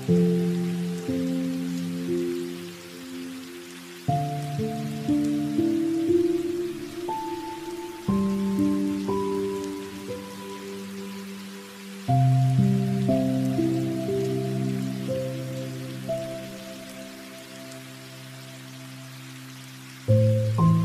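Soft instrumental background music: sustained keyboard chords that change about every four seconds, each fading before the next, over a faint even hiss.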